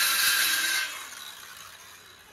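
Electric circular saw running through a rigid vinyl plank with a steady high whine. It is switched off a little under a second in and winds down.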